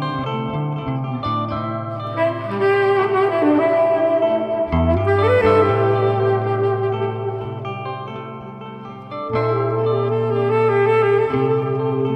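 Instrumental music: a saxophone playing a slow melody of held notes over electric guitar. The music thins out briefly about eight seconds in, then comes back fuller.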